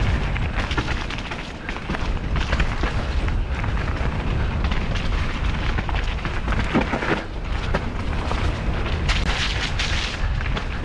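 Mountain bike descending a rough, wet dirt singletrack: tyres crunching over dirt and roots while the bike rattles and knocks, with a heavy rumble of wind on the helmet-camera microphone. The clatter gets busier near the end.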